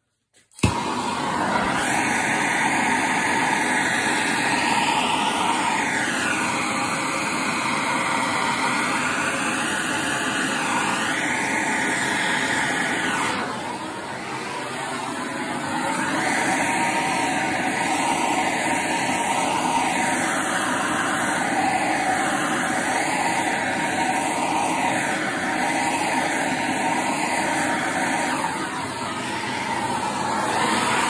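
A handheld heating tool switches on with a sharp start about half a second in and then blows steadily and loudly, playing heat over the oil-soaked wrist of a wooden shotgun stock to soften it for bending. The sound eases briefly about halfway through, then comes back up.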